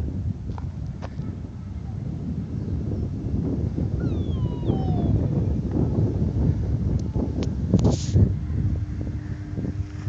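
Footsteps crunching on wood-chip mulch, a dense irregular low crunching, with a few short falling squeaks about four seconds in and a brief louder scuff near the end.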